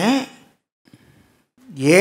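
A man speaking Tamil: a word trails off, then after a pause of about a second he starts speaking again near the end.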